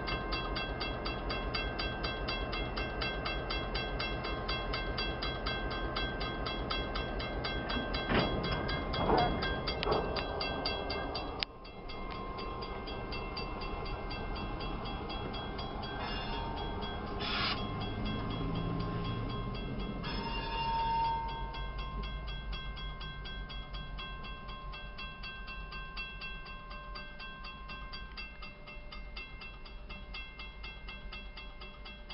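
Railroad grade-crossing bell ringing in rapid, even strokes while a freight train rolls through the crossing with a low rumble. The sound breaks off suddenly about a third of the way in, then the bell carries on as the train noise slowly fades.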